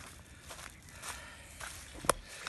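Footsteps on dry reed litter along a lakeshore: a few faint, unevenly spaced steps.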